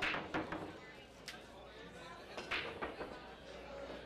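Break shot in 10-ball pool: a loud crack as the cue ball smashes into the rack, followed by scattered clacks of balls hitting each other and the rails over the next few seconds. Bar chatter runs behind.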